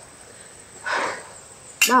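Crickets chirring steadily in the background, with a brief soft rush of noise about halfway through.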